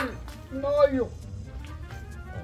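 A short vocal sound from a man about half a second in, over steady background music. A few faint clicks follow as the lid of an aluminium pressure cooker is twisted open; there is no steam hiss.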